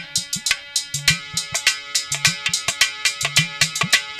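Instrumental break in an aalha folk song: a harmonium holding steady notes under a quick hand-drum rhythm with deep bass strokes.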